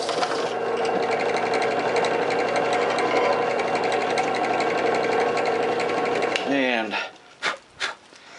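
Benchtop drill press running with a hole saw cutting through an acrylic lens: a steady motor hum under a fast, even chatter of the teeth in the plastic. The sound cuts off suddenly about six seconds in, followed by two sharp knocks a moment later.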